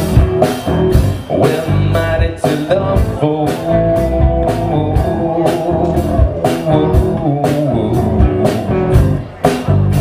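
Live rock band playing an instrumental passage: electric guitars and keyboard over bass and drum kit, with a steady beat of drum and cymbal hits about twice a second.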